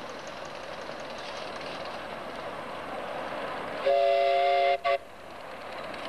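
Miniature live-steam locomotive running with a steady hiss, then its steam whistle sounds a chord of several notes: one blast of just under a second about four seconds in, followed at once by a short second toot.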